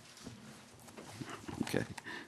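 Thin Bible pages being leafed through at a lectern: scattered soft rustles and clicks, busier in the second half, with quiet muttering under the breath.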